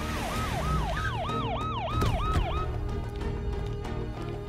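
Police car siren in rapid yelp, about four falling whoops a second, over background music; the siren stops a little past halfway through.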